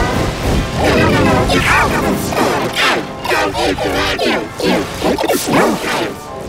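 Animated-film soundtrack of a tractor stampede, with crashes, smashing and music, put through a 'G Major' pitch-shifting effect. The sound is layered, pitch-shifted and warbling, with many quick falling glides and knocks.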